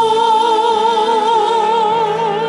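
Women singing a sacred song, the lead voice holding one long note with a wavering vibrato over lower sustained accompanying notes.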